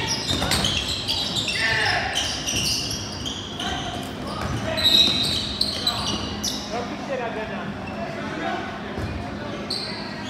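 Sounds of a basketball game in a large hall: a basketball bouncing on the court, with players' and spectators' voices calling out and short high squeaks scattered through.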